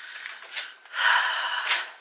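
A woman taking a loud, breathy breath about a second in, lasting under a second, with a faint rustle before it.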